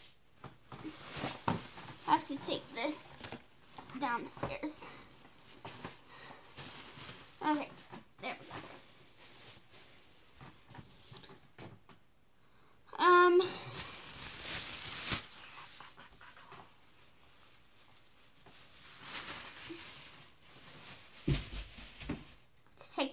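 Plastic shopping bags rustling and crinkling as items are handled and dug through, with small knocks and short mumbled bits of voice between.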